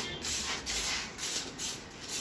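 Aerosol spray paint can spraying in a run of short hissing bursts.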